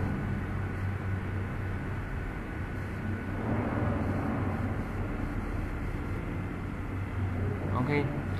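Steady low hum and room noise from the recording, with faint voices in the background.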